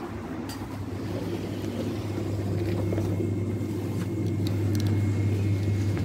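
Steady low hum of a supermarket's refrigerated display cases and ventilation, growing slowly louder, with a faint high whine joining about halfway through.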